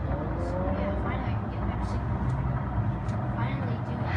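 Steady low outdoor rumble carried up through an open high-rise window from the street and fire show below, with a faint rising-then-falling tone about a second in.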